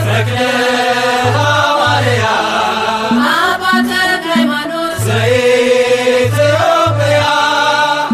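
Ethiopian Orthodox mezmur (hymn) sung in Amharic: a voice sings long, melismatic lines over instrumental backing with a pulsing bass line.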